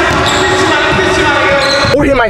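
Basketballs bouncing on an indoor gym's hardwood court in an echoing hall, with people talking in Spanish. A steady held tone runs underneath.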